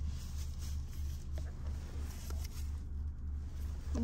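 Steady low rumble of a car's engine and road noise heard inside the cabin, with a few faint ticks.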